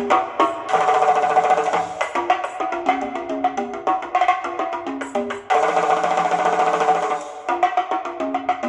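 Instrumental music played through a pair of bare, unmounted Wigo Bauer 25 cm ferrite-magnet speakers driven by an EL84 push-pull valve amplifier: quick, evenly spaced struck notes over a moving melody. The sound swells fuller and denser about a second in and again about five and a half seconds in.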